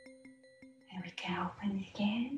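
Soft background music with a held tone and faint ticks, about five a second, fades out. About a second in, a woman's soft, breathy voice starts, half-whispered, and runs on through the end.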